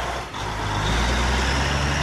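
Fire engine's engine running as the truck pulls away, a steady low rumble that swells about half a second in.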